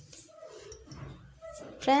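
Scissors cutting through cotton fabric, with a faint wavering whine underneath; a woman's voice starts near the end.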